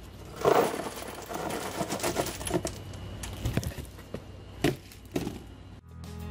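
Plastic coral frag plugs poured out onto a plastic egg crate rack in a short clattering rush about half a second in, followed by scattered light clicks and knocks as they are picked over and set down.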